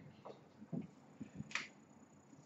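A few soft knocks and one sharp click about one and a half seconds in, from a whiteboard marker being handled against the board before writing.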